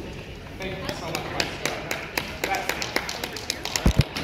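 Fencing foil blades clicking against each other in a quick exchange: light, irregular metallic contacts, several a second, with a heavy low thump just before the end.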